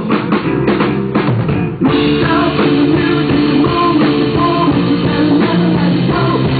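Live rock band playing, with the drum kit to the fore: a run of quick drum hits in the first two seconds, then the full band comes back in.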